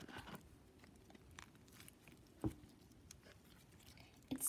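Faint sticky clicks and squelches of slime being kneaded by hand in a plastic tub, with one sharper click about two and a half seconds in.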